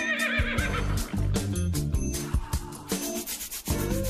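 Background music with a regular beat. A short, wavering high call sounds over it in the first second.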